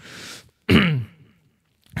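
A man clearing his throat once into a microphone: a breathy rush, then a short sharp vocal burst falling in pitch about a second in.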